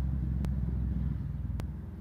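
A steady low rumble, with two faint clicks.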